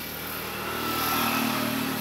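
An engine running, growing louder toward about a second in and then easing off slightly, with a steady low hum.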